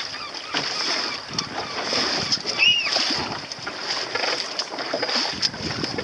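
Water splashing and rushing against the hull of a small boat under way, with wind on the microphone and a steady high-pitched hiss throughout. A brief high chirp rises and falls about two and a half seconds in.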